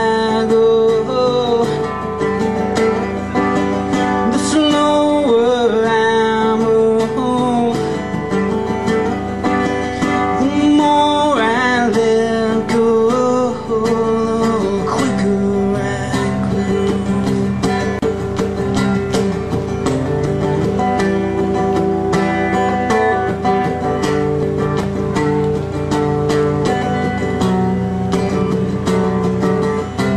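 Acoustic folk-rock song played live on acoustic guitars: steady chords under a melody line that slides in pitch, most plainly in the first few seconds and again about halfway through.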